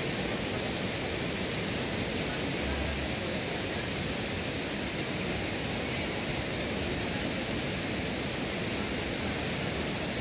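Steady rush of water in a rocky forest stream: an even hiss that neither rises nor falls.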